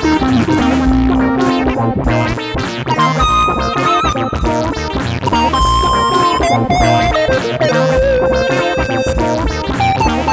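Akai EWI 4000S electronic wind instrument playing long held synth lead notes with slight vibrato, moving from a low note early on up to higher notes and back down near the end, over a looped backing with a steady beat and bass.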